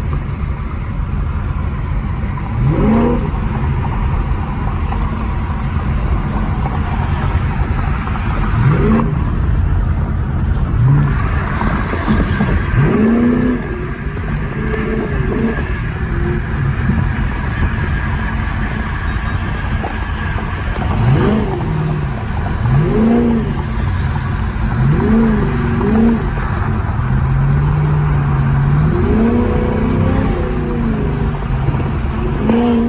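Chevrolet Camaro SS's LT1 V8, fitted with headers and an intake, accelerating hard through the gears, heard from inside the cabin. Its note rises again and again, each sweep cut off by a shift.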